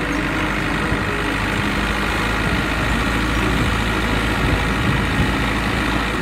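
Boat under way: a steady engine drone mixed with the rushing of churned wake water along the hull.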